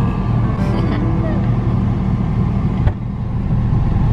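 Car engine idling, heard from inside the cabin as a steady low rumble, with a single sharp thump about three seconds in, a car door shutting.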